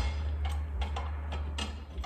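A few light, irregular metallic clicks and taps as a metal bracket is handled and lined up against a tailgate's metal inner panel, over a steady low hum.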